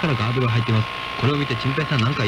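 Voices talking on an AM radio broadcast taped off the air with poor reception, under a steady high interference whistle and noisy crackle.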